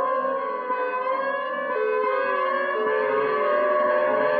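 Instrumental music: an electric guitar plays long, sustained notes that glide slowly down and up in pitch, over a layered instrumental backing.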